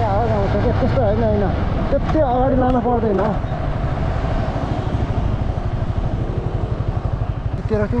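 Motorcycle engine running with an even, rapid low pulsing, plainest from about four seconds in as the bike slows behind traffic. A person's voice rises and falls over it for the first three seconds.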